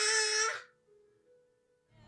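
A woman's short, high-pitched scream of outrage at a cliffhanger, held for about half a second. A faint steady tone lingers after it.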